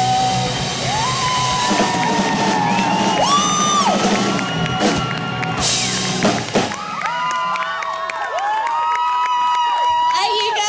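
Live rock band with electric guitars, bass and drums playing the end of a song, with held high notes over the top and whoops and cheers from the audience. The drums and bass drop out about two-thirds of the way through, leaving high gliding notes and whoops.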